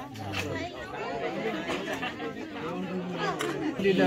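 Several people talking at once, voices overlapping in casual chatter.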